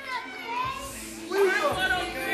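Spectators in a hall calling out and shouting, several voices overlapping, quieter at first and growing louder about a second and a half in.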